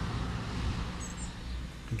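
Outdoor background noise: a steady low rumble, with a brief high chirp about a second in.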